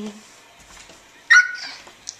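A toddler's short, high-pitched excited squeal about a second and a half in, sliding down in pitch.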